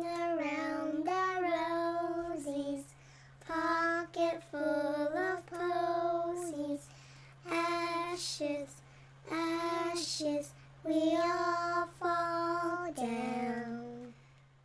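A child singing a slow melody unaccompanied, in held phrases of two to three seconds with short breaks between them, over a steady low hum.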